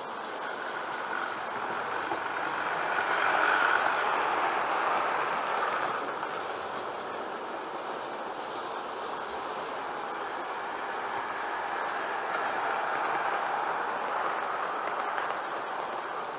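OO gauge model locomotive running on track, its motor and wheels growing louder to a peak about three and a half seconds in and then fading, before swelling again more gently near the end.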